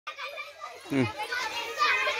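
Several children's voices overlapping, calling out and chattering as they play a running game, with a lower voice calling briefly about halfway through.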